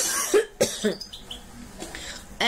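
A woman coughing, a quick run of three or four coughs in the first second.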